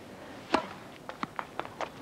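Tennis racket striking the ball on a serve, a sharp pop about half a second in, followed by several lighter knocks over the next second and a half.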